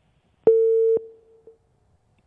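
A single telephone-line beep: a steady busy or disconnect tone about half a second long, starting about half a second in, with a faint trailing echo. It signals that the remote guest's call has dropped.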